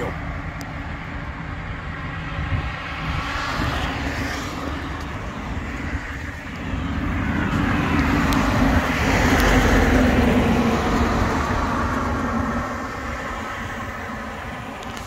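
Road traffic: a truck passes close by, its engine and tyre noise swelling to a peak about two-thirds of the way through and then fading.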